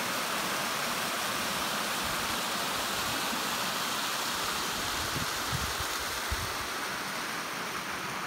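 Water of Fortescue Falls cascading down stepped rock tiers, a steady rushing. A few low bumps on the microphone come a little past the middle.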